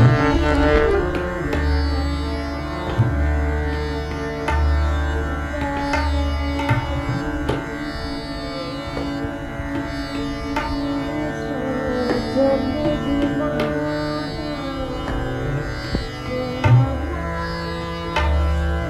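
Harmonium holding steady reed tones, accompanied by tabla strokes, with repeated deep notes from the bass drum.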